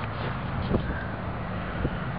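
Truck engine idling steadily with a low hum, over wind buffeting the microphone, with two light knocks.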